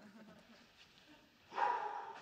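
A brief high-pitched, whine-like vocal sound about one and a half seconds in, after faint room sound.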